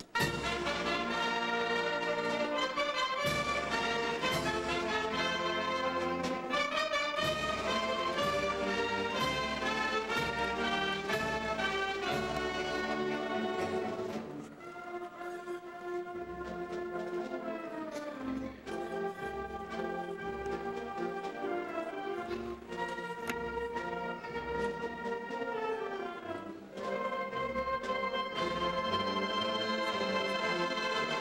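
A wind band of saxophones, clarinets, trombones and tuba playing, entering loudly all at once at the start. The music drops to a softer passage about halfway through and swells loud again near the end.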